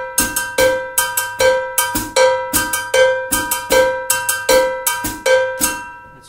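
A Cuban bell (campana, a cowbell) struck with a drumstick in a steady clave-based pattern, several strokes a second: the louder strokes ring on one steady pitch, with lighter clicks between. The pattern is played with its syncopated side first, so it crosses the clave. It stops just before the end.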